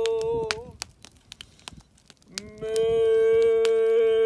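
Long, steady horn blasts at one held pitch. The first ends with a quick upward bend just under a second in. After a short pause with faint clicks, another blast swells in about two and a half seconds in and holds steady.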